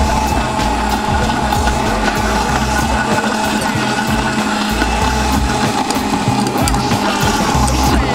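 Electric countertop blender running steadily with a constant motor whine, blending a fruit cocktail, over background music with a steady beat.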